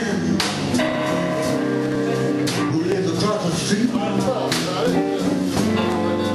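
Live blues band playing an instrumental stretch between sung lines: electric guitar notes over bass and drums with regular drum and cymbal hits. Recorded from the audience.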